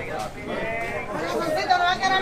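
Several people talking at once in a busy open-air market, with one voice rising louder and wavering near the end.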